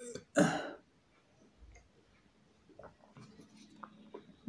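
A man clears his throat harshly twice in quick succession, the second time longer and louder. Later come a few faint clicks of a metal spoon against a plastic cup.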